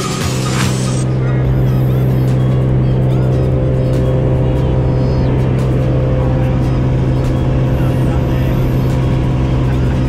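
A light aircraft's engine running with a steady drone, heard from inside the cabin; background music fades out about a second in.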